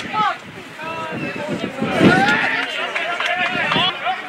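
Several voices shouting and calling to one another across a football pitch. The calls overlap, and the loudest comes about two seconds in.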